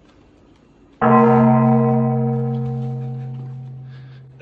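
A single deep bell strike about a second in, ringing on with many overtones and slowly fading away.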